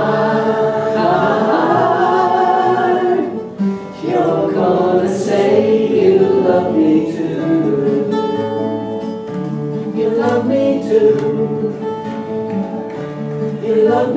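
Two voices singing long held notes together over two strummed acoustic guitars; about halfway through the singing stops and the guitars play on alone, with a fresh strum near the end.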